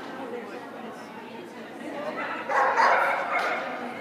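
A dog barking during an agility run, mixed with indistinct voices echoing in a large indoor hall; the loudest burst comes about two and a half seconds in.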